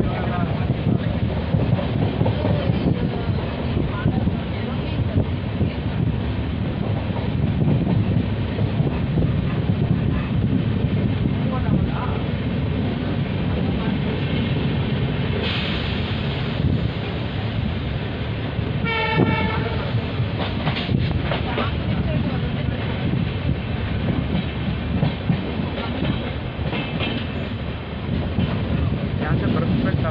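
Passenger train running at speed, heard from a coach's open door: a steady rumble of wheels on the rails with wind rush. About two-thirds of the way in there is a brief pitched tone, like a horn.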